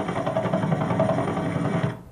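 Simulated helicopter sound effect from the Virtual Iraq virtual-reality simulation, running steadily with a dense low rotor rumble, then cutting off suddenly near the end.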